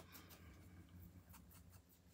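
Faint dabbing and scuffing of an ink blending tool's foam pad against the edges of a small paper die-cut letter, a few soft taps.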